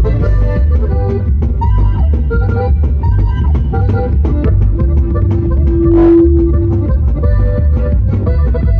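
Live regional Mexican band playing an instrumental passage: a button accordion carries a quick melody over drum kit and heavy bass. Near the middle, one note is held for about two seconds.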